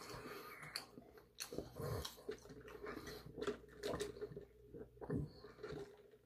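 A fountain soda being sipped through a straw and swallowed: a string of short, faint sips and gulps, close to the microphone.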